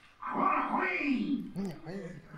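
A man's voice making wordless vocal sounds that start about a quarter second in, sliding up and down in pitch with several short arching glides near the end.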